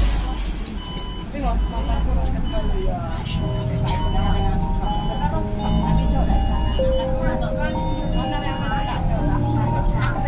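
Cabin sound of a city bus driving: a steady low engine and road rumble, with voices and faint melodic tones over it.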